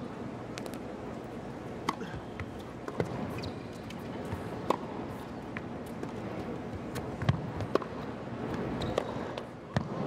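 Tennis ball being hit with rackets during a rally, a handful of sharp, crisp strikes one to two seconds apart, over the steady hum of an indoor arena crowd.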